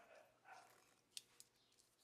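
Near silence: faint room tone with two short, faint clicks a little over a second in.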